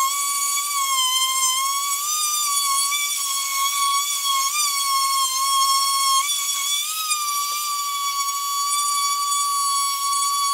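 Handheld power sander running with a steady high whine, its pitch wavering slightly as it works over an aluminum truck wheel rim, sanding it before polishing.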